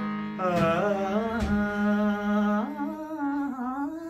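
Harmonium holding a steady low drone while a male singer, about half a second in, starts a wordless vocal phrase that slides and wavers between notes.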